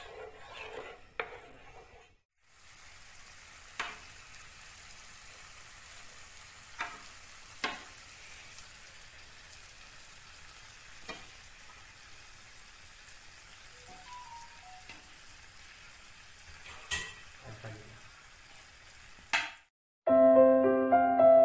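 Mustard gravy with hilsa steaks simmering with a faint, steady sizzle in a nonstick frying pan. A wooden spatula stirs it and knocks against the pan with a few sharp taps, the loudest near the end.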